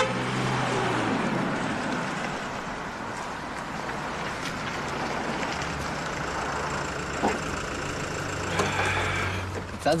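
A Jeep Wrangler driving up, engine and tyre noise steady, and pulling to a stop near the end.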